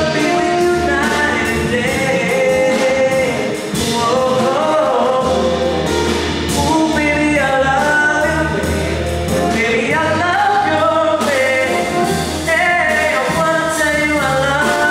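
Live band performance: a male vocalist singing a melody into a microphone, backed by guitar and drum kit.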